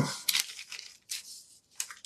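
Decoupage paper crinkling in a few short, separate rustles as it is pressed down by hand and brushed with decoupage medium onto a washboard.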